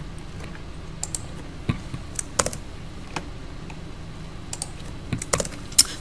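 Computer keyboard being typed on in short, irregular key presses, about a dozen scattered clicks, as a notebook code cell is run.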